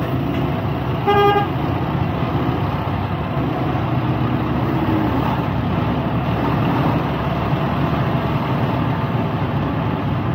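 Semi-truck's diesel engine running steadily as the rig rolls slowly along the street, with one short horn toot about a second in.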